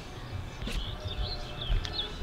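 A small songbird chirping in short, warbling phrases, over a low rumble of handling or wind noise on the microphone.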